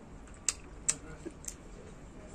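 Eating sounds from a meal of pork and rice eaten by hand: three or four sharp, brief clicks spread over about a second, from chewing and handling the food.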